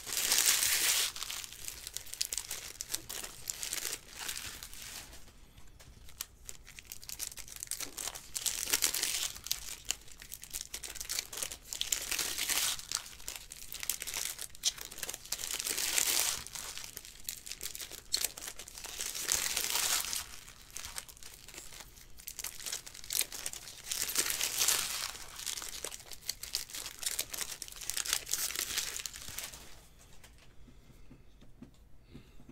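Foil trading-card packs being torn open and their wrappers crinkled by hand, in bursts about every three to four seconds, with cards handled and stacked in between.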